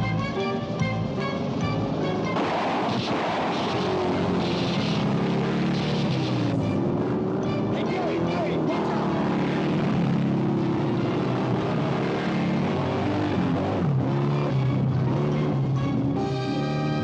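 Film score music plays throughout. From about two to six seconds in, a loud stretch of noisy action sound effects lies over it.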